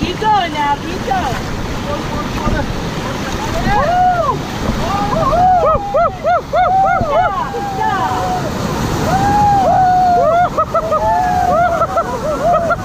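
Whitewater rapids rushing and crashing around a paddle raft. Over the rush, the rafters let out a run of short, high-pitched whoops and yells, about three a second, and then longer held yells near the end.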